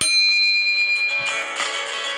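A click, then a bright bell chime that rings out and fades over about a second and a half: the notification-bell sound effect of a subscribe-button animation. Guitar background music plays underneath.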